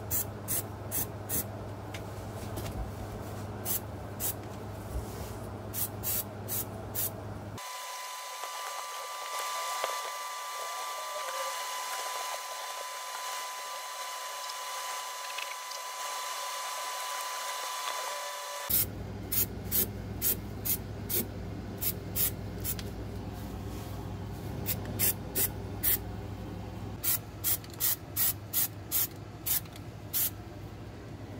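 Rust-Oleum aerosol spray can being sprayed onto a truck's rusty undercarriage in short hissing bursts, several a second and in groups. From about 8 to 19 seconds in, the bursts stop and a steady hiss with a faint high hum is heard instead.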